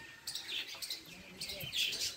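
Small birds chirping among the trees, short high chirps repeating a few times a second.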